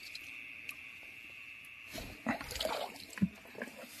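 Crickets chirring steadily in a high band. From about two seconds in, irregular rustling and light clicks of someone moving through wet vegetation.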